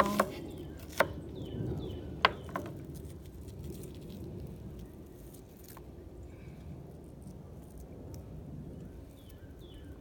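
A kitchen knife slicing through an onion onto a plastic cutting board, with three sharp knocks of the blade on the board in the first couple of seconds, then quieter cutting. Near the end come a few faint falling chirps.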